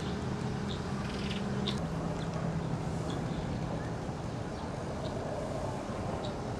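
A steady low engine hum, with a few short, high-pitched ticks scattered over it.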